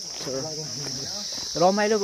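A steady, high-pitched insect chorus, like crickets trilling, runs unbroken beneath a man's voice talking close to the microphone.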